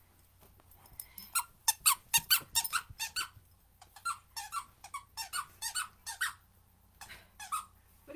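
A puppy biting a squeaky dog toy, setting off a rapid run of short squeaks, several a second, in bursts with brief pauses between them.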